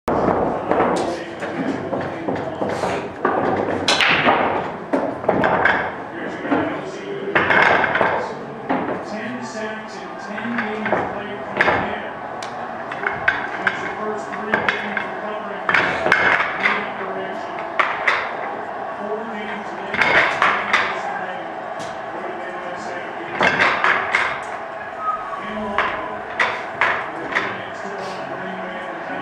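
Pool balls clacking against one another as they are gathered and racked on a coin-op bar pool table, with many sharp knocks scattered irregularly, over background chatter.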